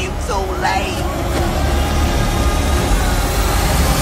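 Dense trailer sound mix: a loud low rumble and noisy clamour, with a voice crying out in the first second, building to the end and cutting off abruptly.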